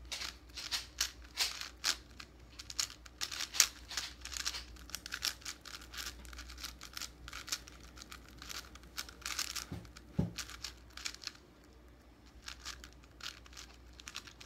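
A 5x5 puzzle cube being turned fast in the hands: quick, irregular runs of plastic clicks and clacks as its layers are turned, with a short lull near the end before the turning picks up again.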